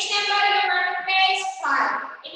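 A high-pitched singing voice holding long steady notes, with a short breathy break near the end.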